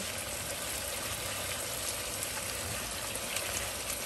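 Chicken pieces sizzling in hot oil in a frying pan as they brown, a steady even hiss.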